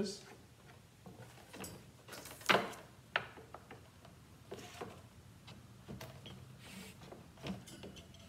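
Scattered clicks and knocks from handling a straight-line mat cutter: a measuring stop set on its rail and a sheet of mat board slid into place under the cutting bar. The loudest knock comes about two and a half seconds in.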